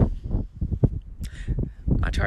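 Wind buffeting the microphone in irregular low gusts and rumbles, with a brief light rustle a little over a second in.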